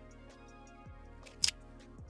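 Background music with a steady beat, with one sharp, loud click about one and a half seconds in.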